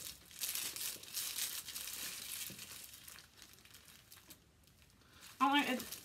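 Crinkling and rustling of packing material handled at a tote bag, dying away about halfway through.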